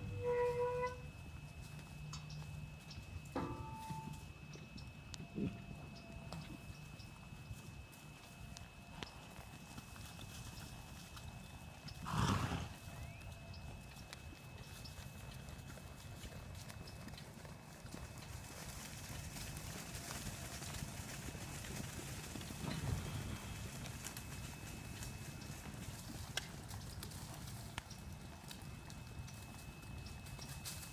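Horse's hooves on soft dirt as it is ridden around a pen, with a short animal call at the very start and a louder, harsher one about twelve seconds in. A faint steady high tone runs underneath.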